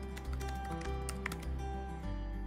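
Computer keyboard typing, a scattering of key clicks over background music with held notes and a steady bass line.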